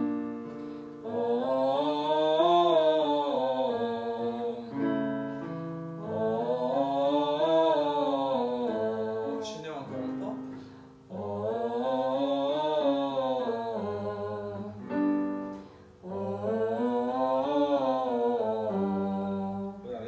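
A woman sings a five-note vocal warm-up scale up and back down on "oh" through hands cupped over her mouth and nose, four times. Short electric keyboard notes give the next starting pitch between the phrases, each a semitone higher.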